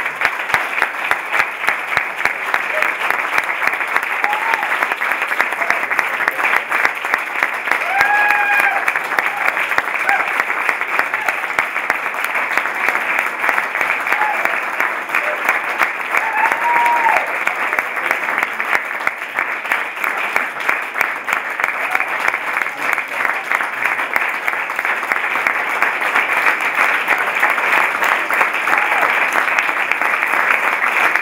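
A room full of people applauding steadily, dense clapping all the way through, with a few short cheers and shouts rising over it.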